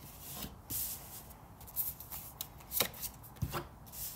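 Tarot cards being laid out one by one on a table: a handful of soft, sharp taps and papery slides spread across a few seconds.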